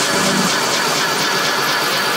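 Electronic dance music with a dense, noisy texture over a repeating low pulse; the pulse drops out about half a second in, leaving the noisy wash.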